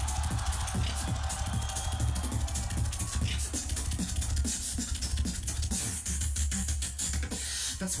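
A beatboxer performing live on a microphone through a large PA: a deep bass line that hardly lets up, under a fast run of clicks and snare-like hits.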